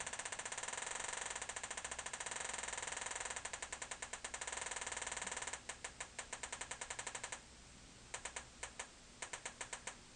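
Homemade metal detector's audio output, a rapid ticking whose rate and strength change as a bronze penny is moved near the search coil: the change in ticking signals the coin being detected. The ticks run fast for about five seconds, then come apart into separate ticks, drop out about seven seconds in, and return in short bursts near the end.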